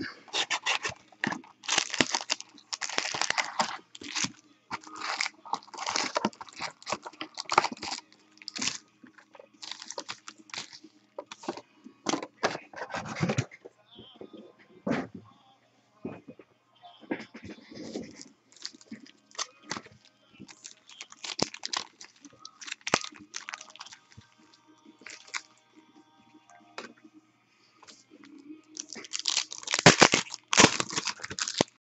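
Plastic shrink-wrap being torn off a trading-card box and crinkling, then foil card packs rustling as they are handled and stacked. It comes in irregular crinkly bursts with a quieter spell in the middle.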